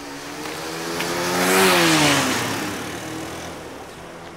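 A motorcycle passing close by: its engine note swells to its loudest just under two seconds in, then drops sharply in pitch and fades as it goes away.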